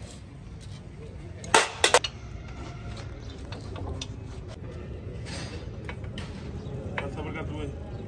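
Metal clinking as a socket wrench and bolts work against a cast transmission housing: three sharp clinks close together about one and a half seconds in, then lighter scattered clicks and taps over a steady low hum.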